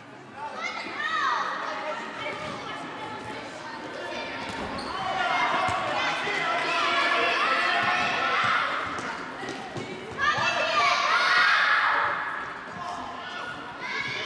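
Indoor football in a large sports hall: children's voices shouting and calling over the play in loud spells, with the thuds of the ball being kicked and bouncing on the hall floor.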